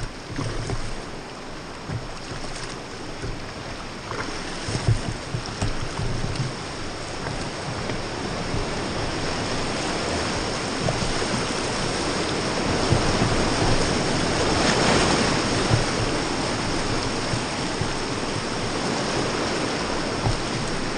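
Rushing whitewater of a river rapid around an inflatable raft, a steady roar that grows louder about halfway through, with occasional low bumps.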